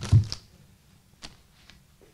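A dull thump as a small plastic hardware bag is set down on a cloth-covered table, followed by a couple of faint light taps about a second later.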